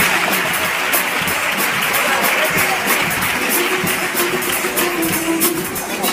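Guitars of a carnival comparsa playing between sung pieces, with audience applause mixed in.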